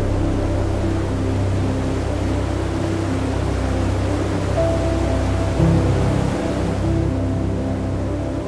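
Slow, calm ambient background music: a sustained low drone under held notes that change slowly.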